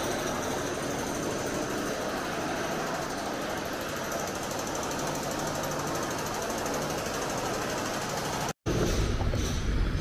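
Steady din of building renovation work, a rapid mechanical rattle like a powered breaker or drill, which cuts off suddenly near the end.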